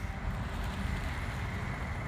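Steady low rumble of a car outdoors, with a faint steady high-pitched tone over it.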